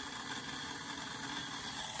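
Model jet turbine in its cool-down cycle after shutdown, spun over to blow air through the hot engine: a steady, quiet whir with a faint hum.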